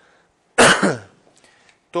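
A man clears his throat once with a short, loud cough about half a second in, heard through a handheld microphone held close to his mouth.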